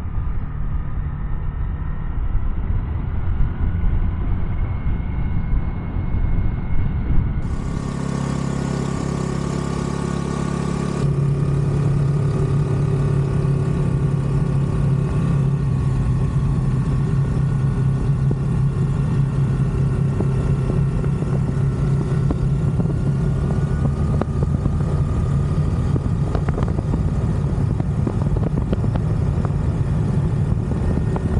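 Honda Navi scooter's small single-cylinder engine running at a steady cruise, mixed with wind and road noise. The sound shifts suddenly twice early on, then settles into an even engine drone.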